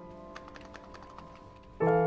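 A quick run of clicks from keys typed on a computer keyboard in the first half. Soft piano background music plays under it, with a fading chord and then a new, louder chord near the end.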